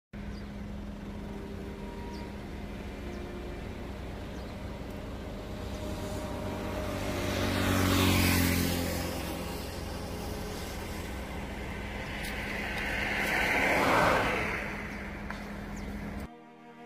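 Car running along a road, a steady low engine and road hum, as heard from inside. Twice another vehicle passes, swelling and fading, about halfway through and again near the end.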